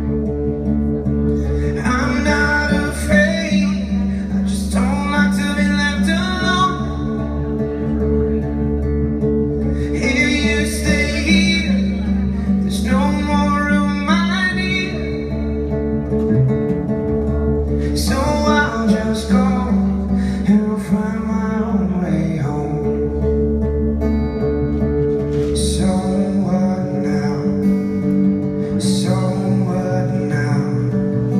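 A man singing live to his own acoustic guitar: steady strummed chords throughout, with sung phrases every few seconds and short instrumental gaps between them.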